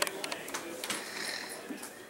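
Several sharp clicks in the first second, over faint, indistinct talk.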